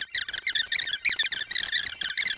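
AI-generated story narration played at many times normal speed, squeezed into rapid, high-pitched chirping chatter with no words to be made out.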